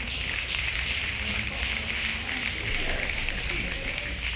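A group applauding, a steady patter of many hands clapping, with a few voices in it.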